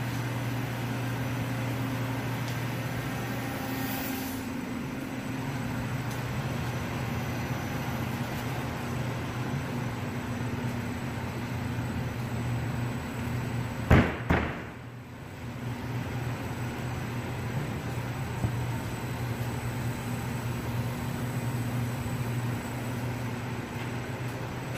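Steady low hum of an industrial roller press running, with two sharp knocks about halfway through.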